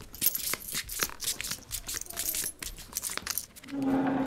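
Poker chips clicking and clinking on a table in a quick, irregular run of small sharp clicks.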